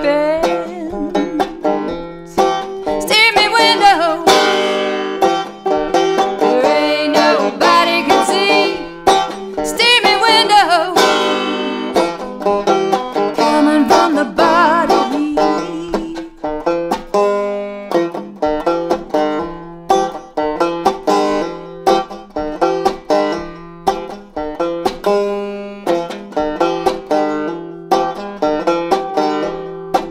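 Five-string resonator banjo picked in rolling patterns, a banjo the player calls out of tune. In roughly the first twelve seconds a woman's voice sings long, sliding notes over it; after that the banjo plays a break on its own.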